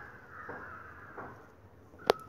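A crow cawing, several calls in a row.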